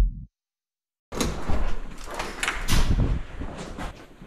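Electronic intro music ends on a falling bass beat. After a second of silence comes a run of sharp knocks and clunks, echoing in a concrete underground car park.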